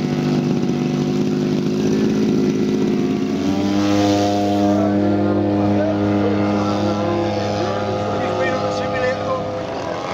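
Engines of large radio-controlled WWI fighter models running steadily. About three and a half seconds in, the sound switches to a different, steadier engine note.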